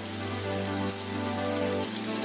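Pigeon meat and spices frying in oil in a wok, a steady crackling sizzle, with soft background music underneath.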